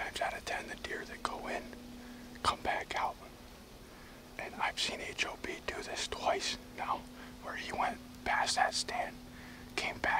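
A man whispering in short phrases close to the microphone.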